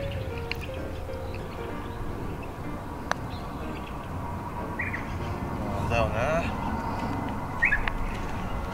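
A putter strikes a golf ball once, a single sharp click about three seconds in. Birds chirp briefly in the background.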